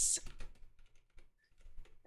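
Computer keyboard typing: a run of faint key clicks with a short pause past the middle.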